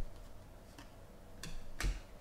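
Trading cards being flipped through by hand: a few light clicks and slides of card stock against card stock, the loudest near the end.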